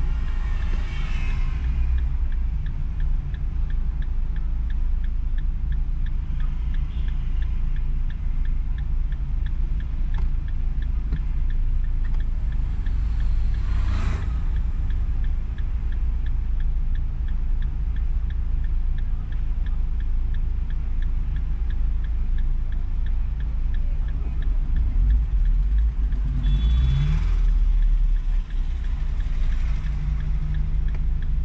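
Car idling with a steady low rumble inside the cabin, a faint regular ticking running under it. About halfway through there is a brief whoosh of something passing, and near the end the engine note rises as the car pulls away.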